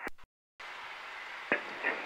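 Air traffic control radio channel between transmissions: a brief dead gap, then a steady radio hiss with a sharp click about one and a half seconds in.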